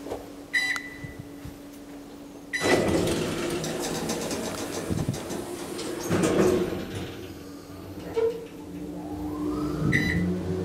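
Schindler machine-room-less traction elevator: a keypad button beeps twice, then the car doors slide shut with a louder stretch of rumble and clatter, and the car sets off downward with a rising whine from the drive. Another button beep sounds near the end.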